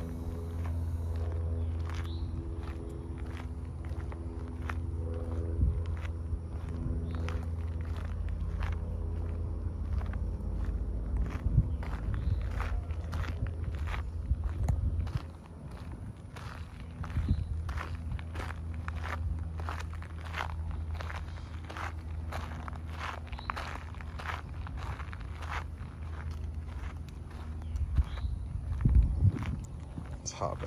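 Footsteps on asphalt, about two steps a second, over a steady low hum.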